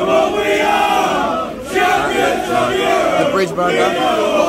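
Crowd of football fans chanting together, many men's voices overlapping loudly and continuously.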